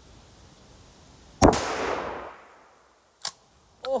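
A single gunshot about a second and a half in, echoing away over about a second. Two faint clicks follow near the end.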